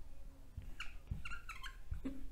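Felt-tip whiteboard marker squeaking against the board in a quick run of short, high chirps about a second in, as letters are written.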